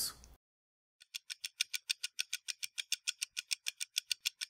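A rapid, even ticking sound effect, about seven sharp ticks a second, starting about a second in after a brief dead silence.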